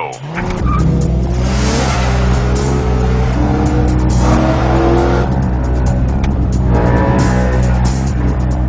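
BMW M3 sedan's V8 engine revving hard as the car launches and accelerates, its pitch climbing again and again as it pulls through the gears.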